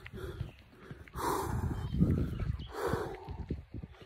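Two heavy breaths huffed close to a phone's microphone, about two seconds apart, over a run of soft footstep-like knocks and handling noise.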